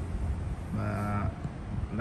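A man's drawn-out hesitation hum, held at one low, level pitch for about half a second near the middle.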